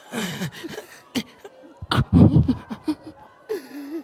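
A man's voice making short, broken sounds without words: bursts like laughter, pitch falling, with sharp gasps for breath, loudest about two seconds in.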